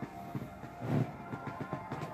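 Held music chords playing from a television, overlaid by a run of sharp knocks and bumps, the loudest about a second in.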